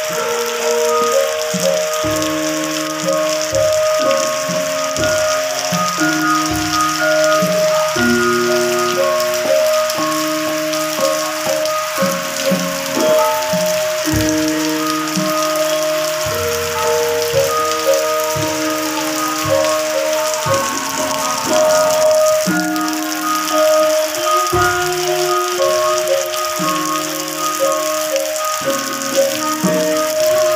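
Steady rain falling on foliage and ground, with a music track of a melody of held, stepping notes playing over it.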